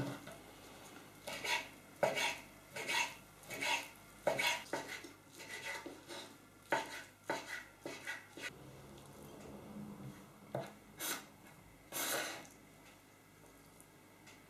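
Ceramic kitchen knife dicing smoked salmon on a wooden cutting board: irregular knocks of the blade striking the board, a few a second at first and thinning out later, with a longer scrape near the end.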